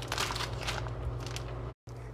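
Water-filled plastic bags crinkling and rustling as they are handled, over a low steady hum. The sound cuts out completely for an instant near the end.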